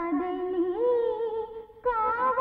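A voice humming a wordless melody over the film's background music. The pitch rises about two-thirds of a second in, and the humming breaks off shortly before the end.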